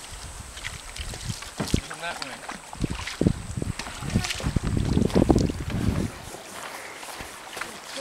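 Kayak paddles dipping and splashing irregularly in the water as a tandem sit-on-top kayak is paddled away, with faint voices.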